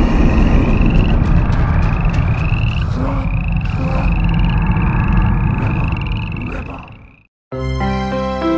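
Frog calls as horror sound design: a rising chirp repeated over and over above a deep rumbling drone and music, fading out about seven seconds in. After a short silence, a bright, light jingle begins near the end.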